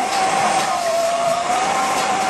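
Handheld butane dab torch running with a steady hiss and a thin whistling tone, heating the nail for a dab.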